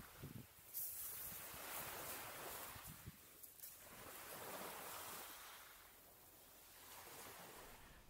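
Faint wash of small waves on a shingle shore, with some wind on the microphone, swelling and easing every two or three seconds.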